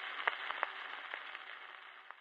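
Surface noise of a 1928 shellac 78 rpm record playing on past the end of the music: a faint hiss with scattered clicks and crackles, fading out near the end.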